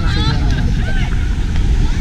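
Voices of people talking nearby, over a steady low rumble of wind buffeting the microphone.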